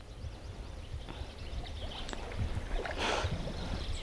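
Wind noise on the microphone: an uneven low rumble, with faint rustling and a short hiss about three seconds in.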